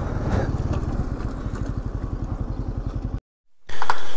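KTM Duke motorcycle's single-cylinder engine running while riding, an even low pulsing that fades slightly. It cuts off abruptly about three seconds in, and after a short silence a louder rushing noise starts near the end.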